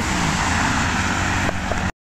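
Road traffic: a steady rush of cars driving along the adjacent street, which cuts off suddenly just before the end.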